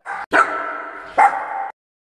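Dog barking three times: a short bark at the start, then two more about a third of a second and just over a second in, each with a ringing tail. The barking stops shortly before the end.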